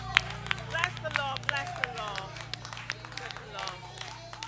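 Hand clapping in a steady rhythm, about three claps a second, thinning out after the first second or so, together with a voice whose pitch rises and falls. A steady low hum runs underneath.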